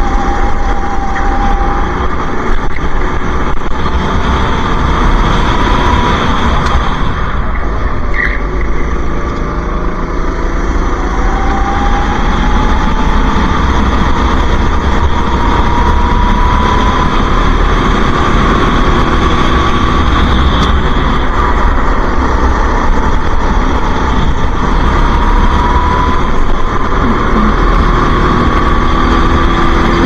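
Racing go-kart engine at speed, its pitch climbing along the straights and falling as it slows for corners, with one deeper drop and climb about a third of the way through.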